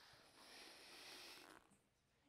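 Faint hiss of air going into a long twisting balloon as it is inflated, lasting about a second and a half and then stopping.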